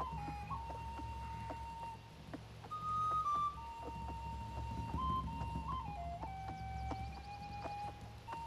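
Film score: a slow flute melody moving in long held notes with small ornaments, over a soft low accompaniment.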